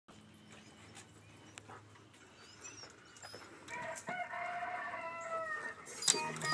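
A rooster crowing once: one long call of about two seconds in the second half, over a faint background with a few small high chirps.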